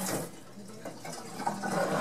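Water spraying from a hand-held faucet sprayer into a utility sink tub, easing off a fraction of a second in and then running on more quietly.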